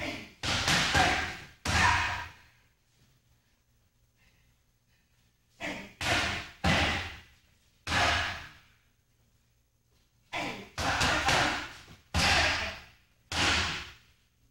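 Muay Thai kicks and punches smacking into Thai pads and boxing gloves in three quick combinations of three to five hits, a few seconds apart, each hit followed by a short echo.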